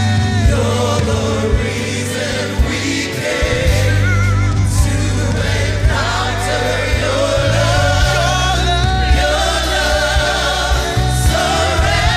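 A worship team of several voices singing a slow praise song in harmony, with held, wavering notes, backed by a live band with a drum kit and cymbals.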